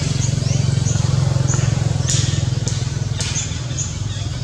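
A motor engine runs with a low, steady, fast-pulsing hum that swells a little in the middle. Short high chirps repeat over it, and a few sharp clicks come in the second half.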